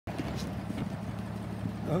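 The engine of a 1932 coupe idling with a steady low running sound.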